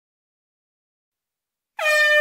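Near silence, then near the end a sudden, loud, held horn-like musical note begins, with a slight dip in pitch at its start: the opening of a cartoon song's music.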